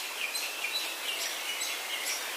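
Faint steady hiss with several short, high chirps scattered through it.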